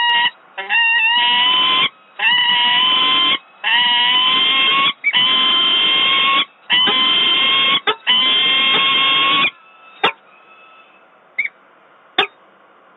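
Peregrine falcon giving a run of six long, harsh wailing calls, each about a second and a half, with short breaks between them. A sharp click follows about ten seconds in.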